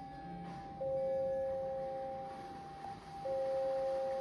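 Two pure, sustained tones. A higher one is held steady throughout. A lower one enters suddenly about a second in, fades away, and enters again near the end.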